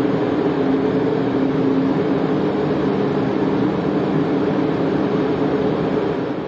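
Steady drone of a ship's running machinery heard on deck: an even rush of noise with a low, multi-toned hum that does not change.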